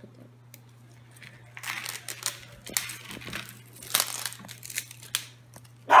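Thin plastic wrapper crinkling and tearing as it is pulled off a plaster dig-kit block, in a run of crackly bursts starting about a second and a half in.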